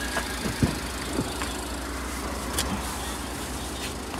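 A car engine idling close by, a steady low hum over street traffic noise, with a few faint clicks.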